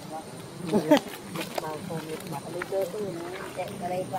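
Pitched, gliding voices chattering and calling, with a brief louder rising cry just before a second in.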